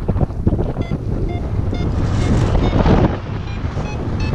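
Airflow buffeting the microphone of a paraglider in flight, swelling to its loudest about two to three seconds in. Through it, a paragliding variometer gives short, spaced beeps.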